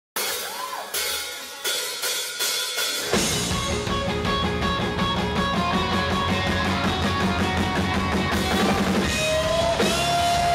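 Live rock band opening a song: a few sharp hits about every 0.7 s, each ringing away, then about three seconds in the full band comes in with drum kit, bass and electric guitars. A long held note rings out near the end.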